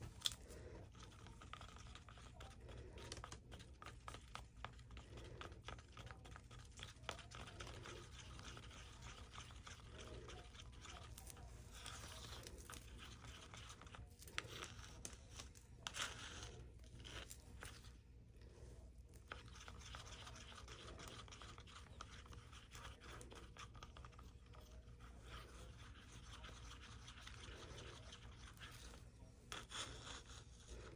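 Faint, scattered scraping and clicking of a wooden stir stick against the inside of a plastic cup as black-pigmented resin is stirred, over a low steady hum.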